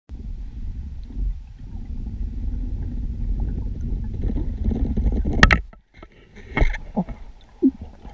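Underwater sound picked up by a camera on a freediving line as a diver descends the rope: a low, steady rumble that ends in a sharp knock about five and a half seconds in. A few softer knocks and clunks follow as the diver's hands reach the line beside the camera.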